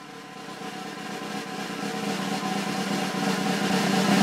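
Drum roll swelling steadily louder, an edited-in build-up sound effect.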